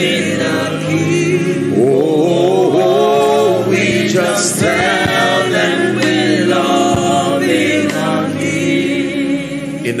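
Gospel worship chorus being sung: a lead voice with held, wavering notes and a group of voices joining in, over a sustained instrumental backing.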